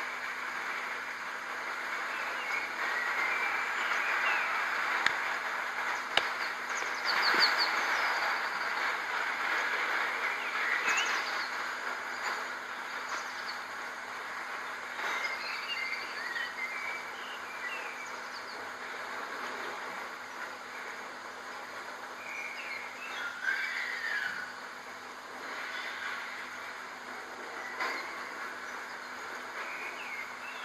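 Woodland ambience: a steady rushing noise with birds chirping now and then, and two sharp clicks about five and six seconds in.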